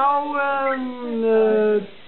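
A person's voice holding one long drawn-out vowel, gliding up at first and then sinking slowly, breaking off shortly before the end.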